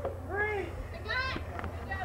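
Two short, high-pitched shouted calls, about half a second and just over a second in, over a low steady hum.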